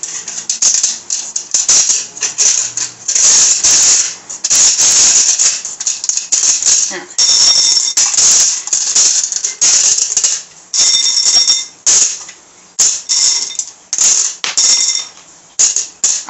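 Handfuls of small faux gem stones clattering and rattling as they are packed into the gap between a glass candle holder and a metal candle mold, in repeated bursts with short pauses, some strikes ringing faintly off the metal.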